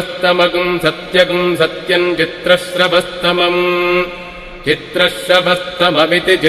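Mantra chanting in a Sanskrit-like language: a voice intones short repeated phrases over a steady low drone, with a brief break a little past the middle.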